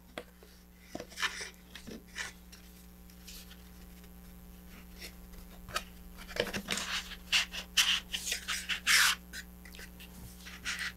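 Rubbing and scraping as a model rocket's shock cord is looped up and tucked into the body tube and the parts are slid together. The handling is faint at first, then a busy run of short scrapes and rustles starts about six seconds in.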